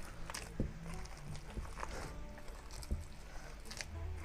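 Bare hands kneading and squeezing a wet black soap paste in a plastic bowl, giving soft, irregular squelches and clicks, with faint music in the background.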